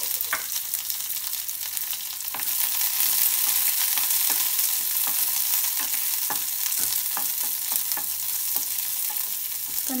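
Sliced onions sizzling in hot mustard oil in a metal kadhai. A spatula stirs them with scattered scrapes and clicks against the pan, and the sizzle grows louder about two and a half seconds in.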